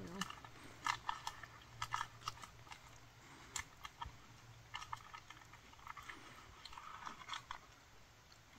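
Faint, irregular crunching clicks of food being chewed, a dozen or so scattered over several seconds.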